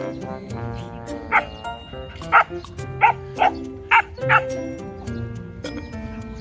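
A dog barking about six times in quick succession, short sharp barks over background music.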